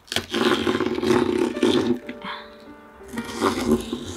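Background music with steady held tones, over the crunchy noise of a kitchen knife slicing through spring onion stalks on a plastic chopping board, loudest in the first half.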